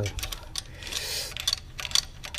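Light metallic clicks of a spanner and screwdriver working the rocker-arm adjuster screw and lock nut on a Chevy Spark's valve gear, with a short scrape about a second in, as the valve clearance is being set.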